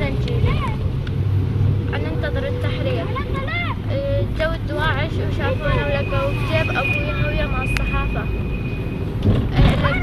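Steady low engine and road rumble inside a moving van's cabin, heard under a girl talking.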